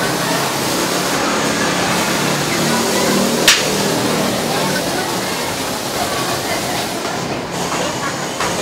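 Indistinct voices over a steady noisy background, with one sharp click about three and a half seconds in.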